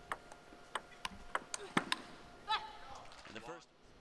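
Table tennis rally: the ball clicks sharply off bats and table about three times a second, with one louder hit near the two-second mark. Then a voice gives a short shout about two and a half seconds in and another brief cry near the end.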